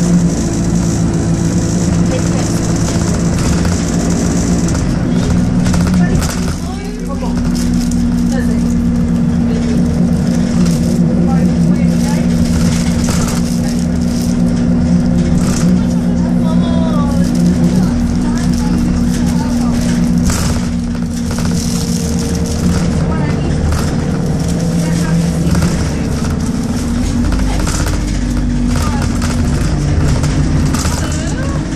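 Bus diesel engine and drivetrain heard from inside the passenger saloon while driving, a steady drone whose pitch shifts with road speed and gear. It briefly drops about seven seconds in, and interior panels and windows rattle throughout.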